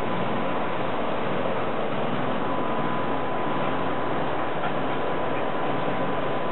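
Steady rushing background noise with no distinct events, and a faint thin steady whine that comes in about a second in.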